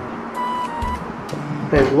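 Background music with a held tone, over a couple of faint snips from small scissors cutting through a sticker's paper backing.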